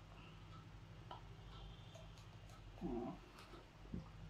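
Mostly a quiet room with a faint steady hum while a man drinks from a glass; about three seconds in there is a short, soft voiced murmur, a man's 'mm' over the drink.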